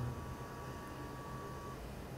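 Quiet pause with faint room hum and a faint steady high tone that fades out near the end.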